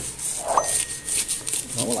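A knife slitting open a plastic postal mailer bag, the plastic rustling and crinkling in short scrapes and tears. A short rising hum about half a second in, and a voice starts at the very end.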